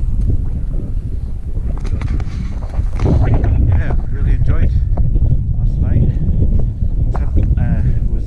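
Strong wind buffeting the camera microphone, a heavy low rumble that gusts louder about three seconds in.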